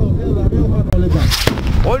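A skyrocket firework bursting in the air, with one sharp bang about a second and a half in, over a crowd's voices.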